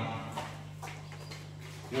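A pause in a man's speech: a steady low hum with faint scattered background noise, and the voice starting again at the very end.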